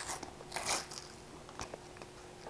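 A sticker packet's wrapper being handled and torn open: a short crinkle at the start, then a longer rustling tear about half a second in, and a faint click near the end.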